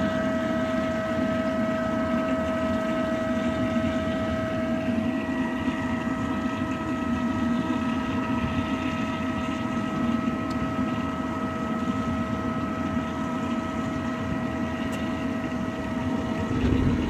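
Pool equipment motor running steadily: a low hum with a constant high whine over it.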